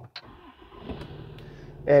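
The 6.7-liter Cummins diesel of a 2018 Ram 2500 starting, heard from inside the cab: a short crank that catches about a second in, then settles into a steady idle. It starts right up.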